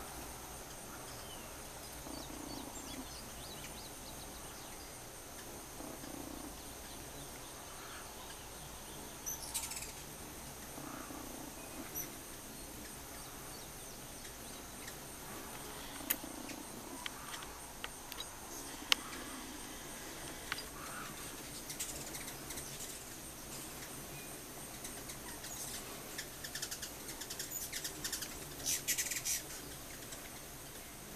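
Birds chirping: scattered short high chirps and clicks, growing busier with quick runs of chips near the end, over a faint steady high tone.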